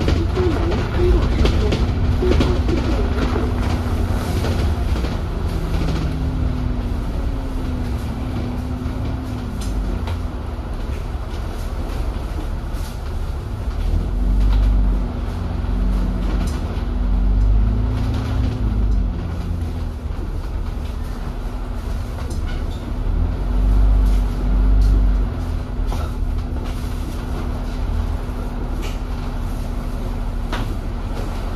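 Alexander Dennis Enviro400 double-decker bus heard from inside while under way: a low engine and driveline rumble, with a whine whose pitch rises and falls as the bus speeds up and slows. Two heavier surges of low rumble come in the second half, along with road noise and small rattles.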